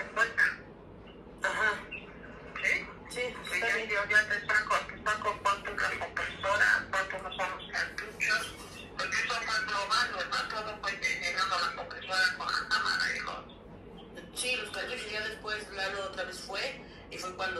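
Speech: a voice talking almost without a break, with short pauses about a second in and again near the end.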